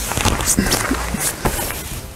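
Rustling of a jacket's fabric being pulled on and dragged over a laptop and a Bible taped to the body, with scattered small knocks and scrapes.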